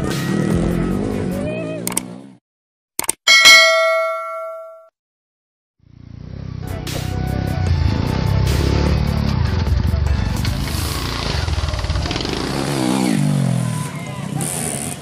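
A bright, bell-like ding rings out about three seconds in and dies away over a second and a half; it is the loudest sound here. From about six seconds a trail motorcycle engine runs and revs unevenly while the rider pulls a wheelie.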